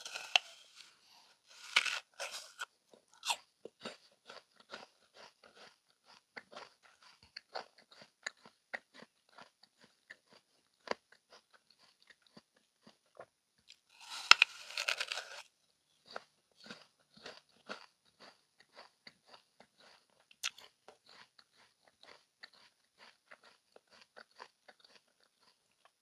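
Close-miked biting into a whole crisp green apple: a loud crunching bite near the start, and another about fourteen seconds in. In between, steady crunchy chewing of the apple flesh.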